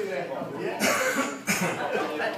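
A person coughing twice, about half a second apart, the first cough a little longer.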